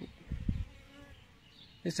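Honeybees buzzing at a hive entrance, with a faint hum of a single bee flying close past about a second in. A brief low rumble on the microphone comes just before it.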